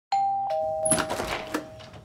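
A two-note doorbell chime, a higher note then a lower one that rings on, with a brief scuffle of rustling and two sharp knocks about a second in.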